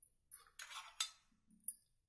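A stainless steel spoon scraping and clinking against a steel bowl, with a sharp clink about halfway through and another near the end.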